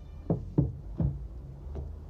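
Hardcover books being pushed over by hand and toppling one onto another on a wooden table top: four dull knocks within under two seconds.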